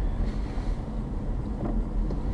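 Car driving along a city street, heard from inside the cabin: a steady low road and engine rumble.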